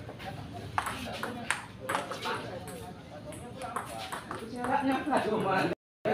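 Table tennis rally: the ball clicking off the paddles and bouncing on the table in a quick, irregular run of sharp knocks, with people talking in the background, the voices louder near the end.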